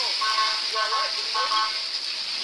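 Vehicle horn sounding three short blasts, evenly spaced, over a steady hiss of rain and traffic on a wet street.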